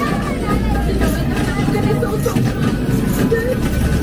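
Loud dark-ride soundtrack playing with the on-screen action: a steady deep rumble under sound effects and indistinct voices.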